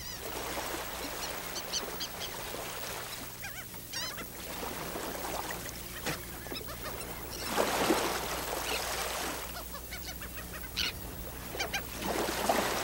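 Birds calling, short wavy cries, over a steady rushing background with no music. It is outdoor ambience rather than a song.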